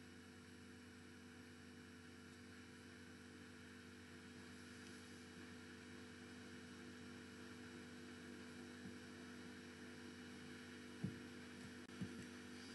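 Near silence: a faint steady electrical hum in the recording, with one brief click near the end.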